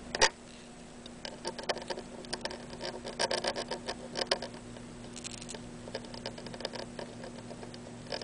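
Soldering iron tip and solder wire working into a circuit board's flux-coated vias, making small, irregular clicks and crackles that thin out in the second half. A steady low hum runs underneath.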